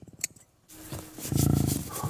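An anaesthetised young European bison bull giving a low, rattling groan as it breathes, once, a little past the middle.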